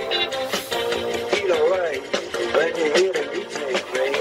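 Rock song with male vocals played loudly from an amplifier through a Wurlitzer organ's rotating tremolo speaker unit.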